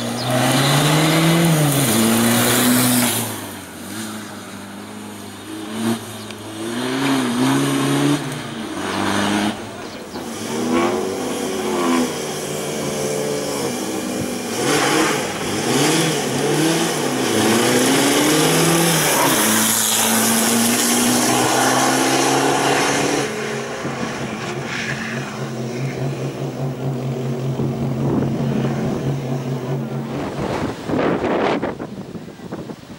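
VW Beetle-bodied slalom race car's engine revving up and down again and again as it accelerates and lifts off through cone chicanes. For the last third it holds a steady note, louder at first and then quieter.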